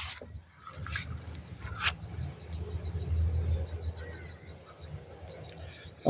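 Wind buffeting the microphone: a low, uneven rumble, with a single sharp click about two seconds in.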